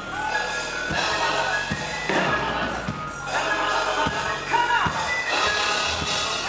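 Live gospel band playing with a steady beat of low drum thumps, bass guitar and keyboard, and a voice singing over it.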